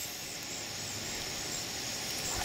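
Quiet outdoor field ambience: an even hiss with a faint, steady high-pitched insect drone running through it.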